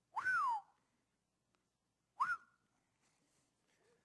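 Two short high-pitched whistle-like sounds: the first rises and then falls, and the second, about two seconds later, rises and holds briefly.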